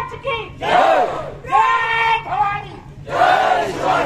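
Call-and-response slogan chanting: a single woman's voice calls out a slogan and a crowd of cadets shouts the reply together. The group shout comes about a second in and again near the end, with the lone call between.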